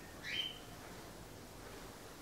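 A single faint high chirp about a quarter second in, rising and then held briefly on one pitch, over quiet room tone.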